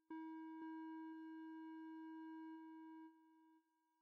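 A single steady electronic tone, hollow and buzzy, held for about three and a half seconds with a click near its start, then dropping away in steps near the end.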